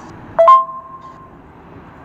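A short two-note electronic chime, a lower tone stepping straight up to a higher one and then fading, about half a second in. It is WhatsApp's cue tone that plays as one voice message ends and the next starts automatically. Faint hiss lies under it.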